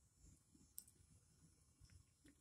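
Near silence: faint room tone, with one tiny click just under a second in.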